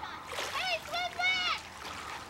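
A high-pitched voice calling out three times, in drawn-out shouts that rise and fall in pitch, without clear words.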